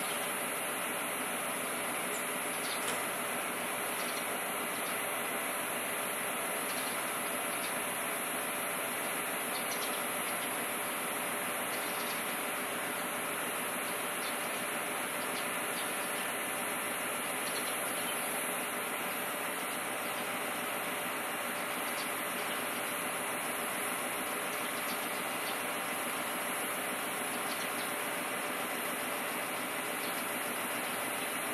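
Choshi Electric Railway set 2001 electric train standing still at the platform, its onboard equipment giving a steady hum and hiss, with a few faint clicks.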